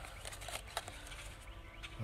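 Thin plastic water bottles crinkling and clicking as they are handled and pressed together, a scatter of faint, irregular little cracks.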